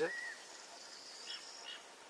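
Faint birdsong: a short curved note at the start, a thin high note held for about a second, then a few brief high chirps.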